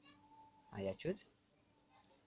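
A faint keyboard note fades, then about a second in comes a short two-part vocal call whose pitch bends up and down.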